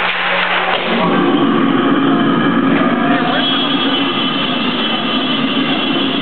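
Deep guttural death-metal vocal roar through the PA, starting about a second in as the song begins, with steady high-pitched tones entering about halfway.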